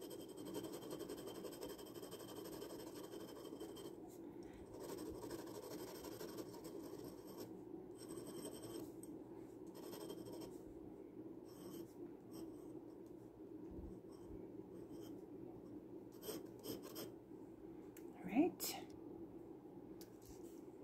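Glass dip pen nib scratching faintly across sketchbook paper in short repeated strokes as ink swatches are hatched on. A brief rising voice-like sound comes near the end.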